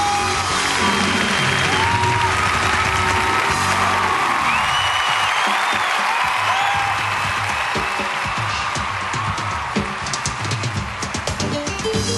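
Large concert crowd cheering and screaming at the end of a live pop song, with many shrill high screams over the din. The band's closing sound fades out in the first few seconds, and the cheering carries on.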